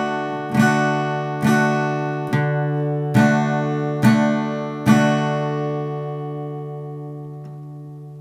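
Acoustic guitar playing an open D major chord in a slow bass-note strumming pattern: the open D string picked, then the chord strummed, one stroke a little under every second. The last strum, about five seconds in, is left to ring and slowly fades.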